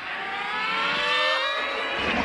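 A rising pitched sweep in the cartoon soundtrack: several tones climb together steadily for about a second and a half while growing louder.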